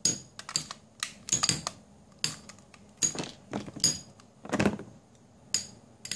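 Two Metal Fight Beyblade tops, Grand Ketos and Aries, colliding as they spin in a plastic stadium: irregular sharp metallic clinks with a short ring, about a dozen in all, with a heavier knock about four and a half seconds in.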